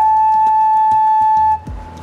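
Side-blown bamboo flute (bansuri) holding one long steady note, which breaks off about three-quarters of the way through, followed by a low thud.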